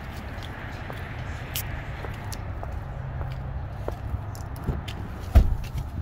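Footsteps over a steady low outdoor rumble, then a single heavy thump about five seconds in: an SUV door shutting.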